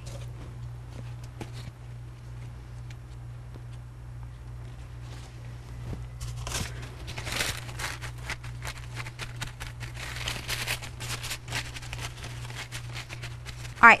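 Crumpled paper towels dabbed and pressed onto a wet painting to blot it: soft paper rustling and crinkling, sparse at first and much busier from about six seconds in, over a steady low hum.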